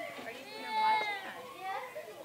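A toddler's high-pitched whining call: one drawn-out, wavering wail, loudest about a second in, among other small children's voices.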